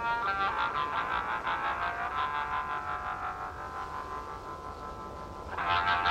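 Blues song intro: a harmonica holds notes with a wavering vibrato of about four to five pulses a second, fading slowly. A new held chord comes in near the end.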